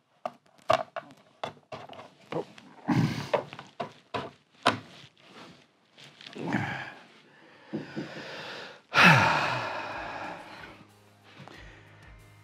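Flamed sycamore bass neck being worked by hand into a tight neck pocket in the wooden body: a run of sharp wooden knocks and taps, with grunts and breaths of effort and a loud rush of breath about nine seconds in. The neck is a fraction too big for the pocket, so it goes in stiffly.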